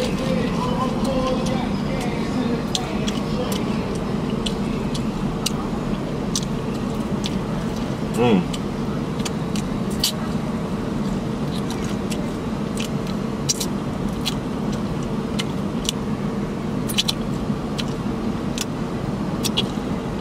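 Crispy fried chicken being eaten: scattered sharp crunches and mouth clicks over a steady low hum of the car and street traffic. A short hummed 'mm' comes about eight seconds in.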